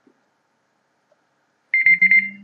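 Timer alarm going off near the end in a rapid run of high beeps, signalling that the 30 seconds given for the problems are up.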